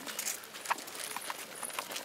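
Irregular footsteps crunching on a dirt path strewn with dry leaves, heard as a scatter of short clicks. A faint, thin, high-pitched tone comes and goes from about halfway through.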